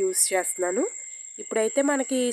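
A woman speaking in Telugu, pausing for about half a second in the middle, over a steady high-pitched trill.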